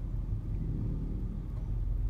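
Steady low rumble of a manual car's engine and running noise, heard from inside the cabin as it creeps along in slow traffic.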